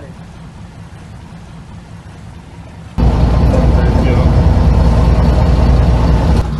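Boat engine running with a steady low hum; about three seconds in it abruptly becomes much louder and fuller, with rushing noise over the engine hum.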